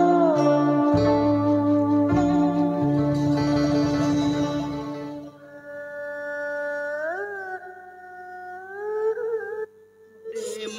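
Instrumental accompaniment for traditional Vietnamese chèo singing, with plucked strings over low bass notes. About five seconds in it thins and drops in level to one sustained melodic line that slides up in pitch and holds.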